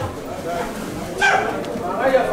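A man speaking through a microphone and PA, with a brief high-pitched vocal cry, like a yelp, about a second in.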